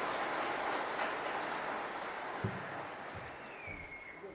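A steady rushing noise that slowly fades, with a single low knock a little past halfway and a short whistling chirp near the end.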